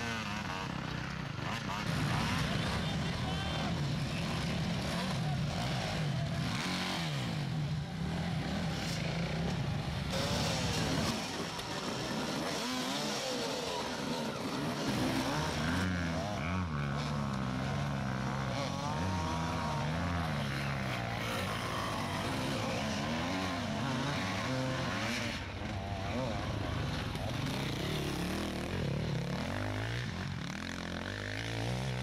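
Several dirt bike engines revving hard, their pitches rising and falling and overlapping as the bikes climb a steep, loose dirt hill.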